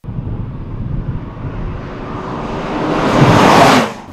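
McLaren MP4-12C supercar with its twin-turbocharged V8, driving toward and past the microphone. The engine and rushing noise grow steadily louder and brighter, peak near the end, then cut off suddenly.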